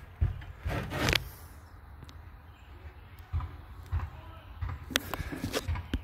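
Scattered footsteps and light knocks, about half a dozen spread over a few seconds, from someone walking around inside a small wooden cabin frame, with handling rumble on the microphone.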